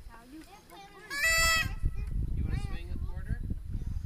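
A child's short, high-pitched squeal about a second in, over faint talk, followed by a low rumble of wind on the microphone.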